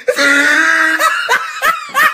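A person laughing loudly: one long drawn-out laugh, then a few short bursts of laughter.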